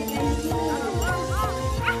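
Background music with a beat, with short dog barks and yips over it.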